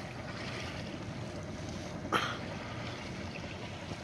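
Steady low outdoor background noise at the waterside, with one brief short sound about two seconds in.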